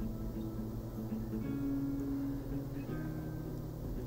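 Guitar background music, held notes changing every second or so.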